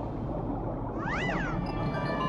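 A single meow-like call, rising and then falling in pitch over about half a second, about a second in, over background music.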